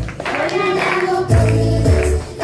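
A group of children and adults singing a Christian worship song in Spanish over amplified music, with deep bass notes about once a second, and hand clapping.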